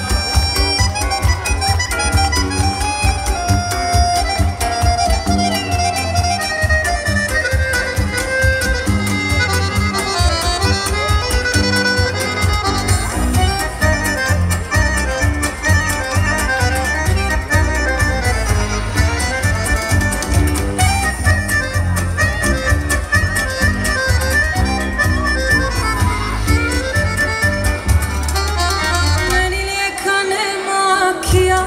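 Live sevdah band playing an amplified instrumental passage, an accordion carrying the melody over a steady bass and drum beat.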